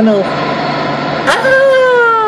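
A man's voice ends a word, then about a second in a child's long 'aah' starts and slowly falls in pitch, over the steady running noise of a light-rail train.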